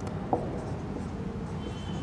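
Marker pen writing on a whiteboard: faint strokes of the felt tip rubbing across the board's surface.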